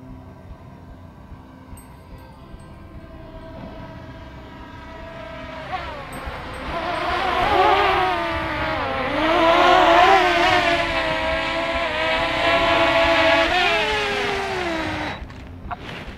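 DJI Mini 2 SE quadcopter's propellers whining as it flies down close, growing loud from about six seconds in. The pitch wavers, then falls before the sound cuts off shortly before the end.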